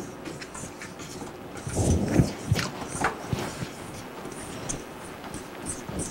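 A spoon stirring a graham-cracker-crumb, pecan and margarine crust mixture in a metal bowl: soft scraping with a few light clicks and knocks, busiest about two seconds in.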